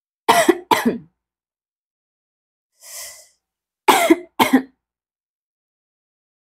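A woman coughing: two pairs of short, harsh coughs about three seconds apart, with a breathy exhale between them, brought on by a sip of sour, spicy cuko sauce.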